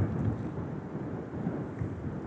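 Wind rumbling on the microphone: a steady, gusting low noise.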